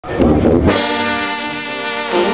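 A Junkanoo band's brass section of trombones and trumpets holds one long chord. The chord comes in sharply about two-thirds of a second in, after a short burst of louder, rougher sound.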